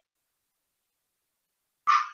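Dead silence from gated call audio, then near the end a brief sharp burst of sound as a man begins to speak.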